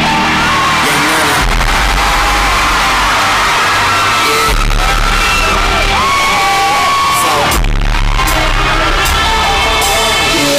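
Loud live hip-hop concert music over an arena sound system, recorded on a phone: deep bass notes drop in and out every second or two beneath a gliding melody line.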